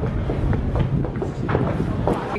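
Footsteps clattering on a harbour boarding ramp as several people walk down it, irregular knocks over a steady low rumble.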